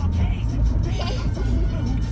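Steady low rumble of a car on the road, heard from inside the cabin, with music playing over it.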